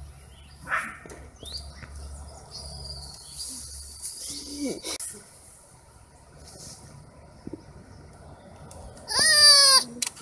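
Baby sloth giving one loud, high-pitched bleating cry near the end, rising at its start. Faint short high chirps come earlier.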